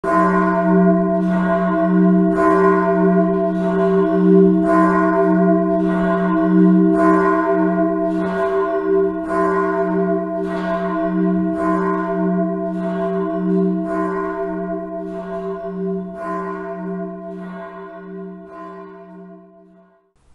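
A large church bell tolling in a steady, even rhythm, each stroke ringing on into the next. The ringing fades away near the end.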